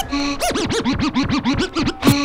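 Turntable scratching of a vinyl record over a beat. A short held tone opens, then from about half a second in comes a fast run of back-and-forth scratches, about eight a second, each a quick rise and fall in pitch.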